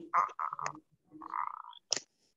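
A voice coming through an online video call, broken up and garbled by a poor internet connection. It arrives in short, choppy fragments with sudden dropouts between them.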